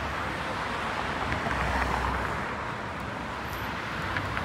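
City street traffic: cars running past on a busy multi-lane road, a steady hum of engines and tyres, with a low rumble swelling about halfway through as a vehicle passes close.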